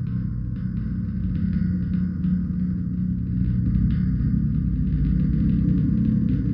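Dark ambient drone music made from electronically processed gong: a deep, dense rumbling drone with a faint crackling texture above it, slowly swelling in loudness.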